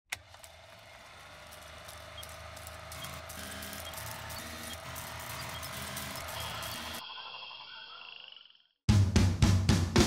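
Intro sound design: a slowly swelling drone with steady tones and scattered clicks and crackle, which cuts off about seven seconds in and leaves a ring that fades out. After a brief silence, drum-led music starts about nine seconds in.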